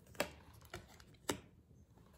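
Two sharp clicks about a second apart, with a fainter tick between, from tarot cards being handled.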